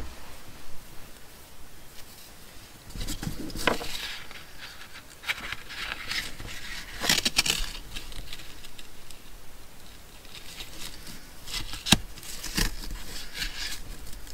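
Hands handling lace trim and a paper index card on a wooden table: irregular rustling and scraping, with a few light taps.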